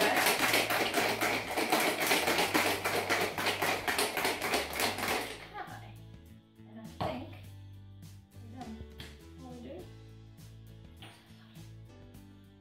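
Metal cocktail shaker being shaken hard with metal ice cubes inside: a loud, fast, even rattle that stops abruptly about five seconds in. Background music continues after it, with a few separate knocks.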